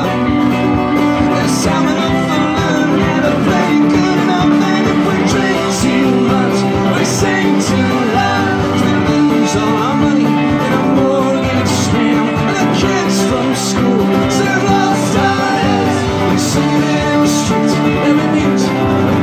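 Live country-rock band playing an instrumental passage, the fiddle bowing a lead over strummed acoustic guitar, electric guitar, bass and drums.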